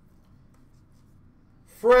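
Very faint handling of trading cards in a quiet room. A man's voice starts near the end.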